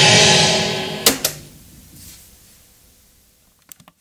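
Music from a Toshiba RT-6036 boombox's speakers, dying away over the first second. About a second in, two sharp mechanical clicks come a fraction of a second apart as a key on its cassette deck is pressed, and the music stops. A few faint clicks follow near the end.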